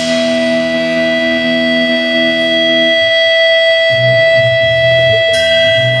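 Live rock band music: a high note is held steadily over the band. A lower chord drops out about three seconds in, and a deep bass line comes in about a second later, with electric guitar.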